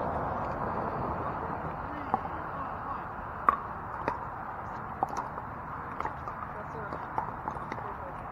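Pickleball paddles striking a hard plastic ball: sharp, ringing pocks coming irregularly about once a second after the first two seconds, over a steady murmur of players' voices.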